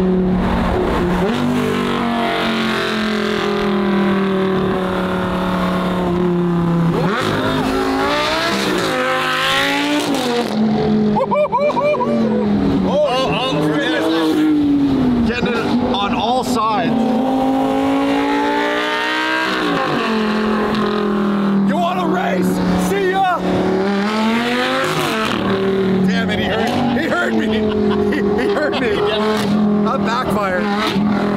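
Sports car engines revving hard again and again, the pitch holding steady for a few seconds and then climbing and dropping.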